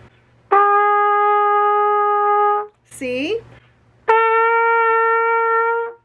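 Trumpet playing two long, steady notes of about two seconds each. The first is a written B flat, played with the first valve pressed down. After a brief spoken word, the second is an open written C a step higher.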